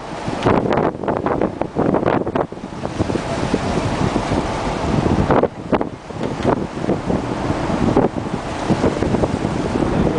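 Wind buffeting the microphone on an open ship's deck, loud and gusty, over the wash of a rough sea against the hull.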